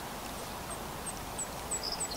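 A small bird calling in a run of short, high, slightly falling chirps, about three a second, growing louder toward the end, with a thin steady high whistle starting near the end. A steady background hiss runs underneath.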